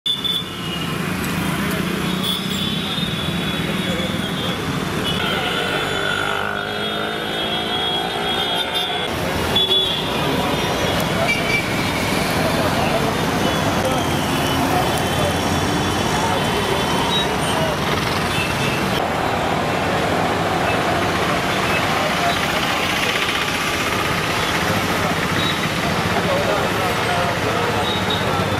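Busy street traffic: motor vehicles running with horns tooting now and then, and people's voices mixed in.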